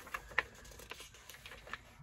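Printed paper pattern sheets rustling faintly as they are handled and turned, with soft scattered crackles and one sharper crackle about half a second in.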